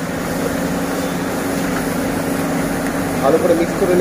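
Ground spices and mustard paste frying in hot oil in an iron kadai, stirred with a metal spatula. A steady sizzle sits over a constant low hum.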